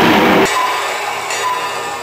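A sudden loud crash lasting about half a second, then a ringing that holds and slowly fades, used as the sound effect for the bat swing that 'shatters the air'.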